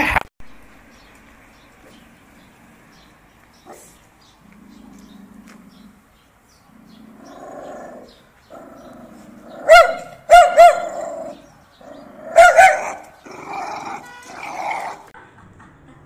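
A dog barking: after a quiet stretch, several loud, sharp barks come close together about ten seconds in and again about twelve seconds in, followed by softer dog vocalising.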